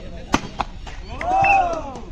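Volleyball serve: a sharp smack of a hand striking the ball, a lighter knock just after, then a man's long shout that rises and falls in pitch.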